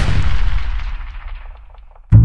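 Battle sound effect of cannon fire and gunshots: a loud blast with sharp cracks, its deep rumble fading away over about two seconds.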